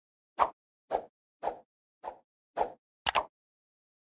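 Cartoon pop sound effects for an animated logo intro: five short pops about half a second apart, then a quick double click.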